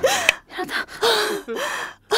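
A woman gasping and moaning in pain: a string of about five short, strained cries in quick succession.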